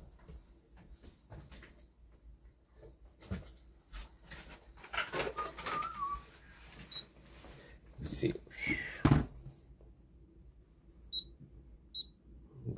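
Handling knocks and brief muttering, then two short high electronic beeps near the end from a digital kitchen scale's buttons as it is switched on and zeroed.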